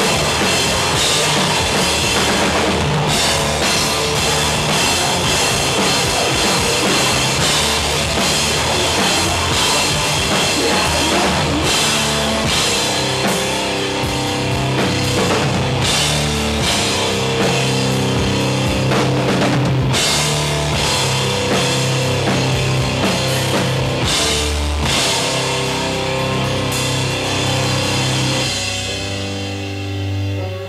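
Heavy rock band playing live: a pounding drum kit with crashing cymbals under distorted electric guitars and bass, loud and dense, thinning out just before the end.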